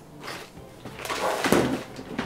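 Plastic bag of toy accessories crinkling and rustling as it is handled. It is quiet at first, and the rustle builds from about a second in.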